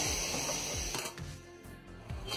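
Steady hiss of a pot of ginger and cinnamon water simmering on a gas stove burner, which stops suddenly about a second in, leaving faint room tone.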